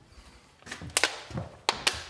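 Footsteps on bare wooden floorboards in a small empty room: a few sharp knocks and taps, the loudest about a second in and twice near the end.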